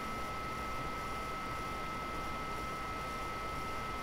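Room tone: a steady hiss with a faint, even high-pitched whine underneath, and no other events.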